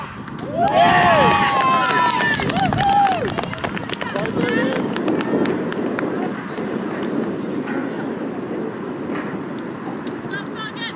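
Several women's voices cheering and shouting together as a goal is scored. Overlapping high-pitched yells come in the first few seconds, then settle into looser, quieter shouting and chatter.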